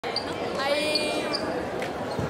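A young man's voice giving one drawn-out, pitched call that lasts about a second, echoing in a large gymnasium, over background chatter and hall noise.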